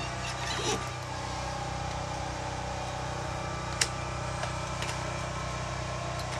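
A steady mechanical hum, like a motor running at constant speed, with one sharp click about four seconds in.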